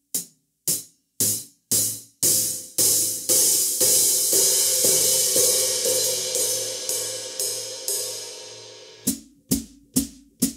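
Hi-hat struck with a drumstick about twice a second. The first strokes are short and clipped. About two seconds in, the pedal opens the cymbals into a long ringing wash that slowly dies away, and the strokes turn short again near the end, showing how the pedal changes the hi-hat's tone.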